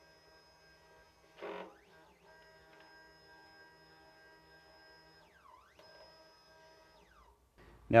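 Near silence with a faint, steady hum of several thin tones, a brief soft sound about one and a half seconds in, and a few faint sliding tones later on.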